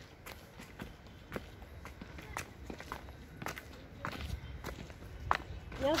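Footsteps on a paved path, about two steps a second, with a person's voice starting near the end.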